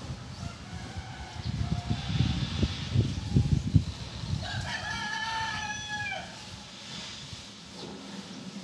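Low rustling and knocking from handling close to the microphone in the first half, then a rooster crows once, a single call of nearly two seconds that holds its pitch and drops away at the end.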